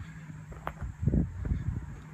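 A few soft footsteps on pavement, with a click just before them, over a low steady hum.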